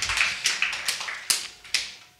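Applause from a small audience, irregular claps that thin out and die away near the end.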